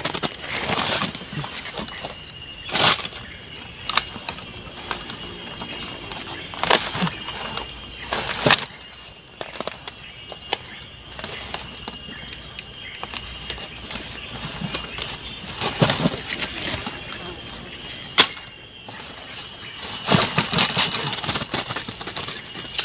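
Steady high-pitched drone of forest insects, with scattered rustles and knocks as a backpack is rummaged and durians are pulled out of it.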